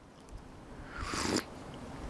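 A person taking one short sip of a drink about a second in, over a faint steady low background.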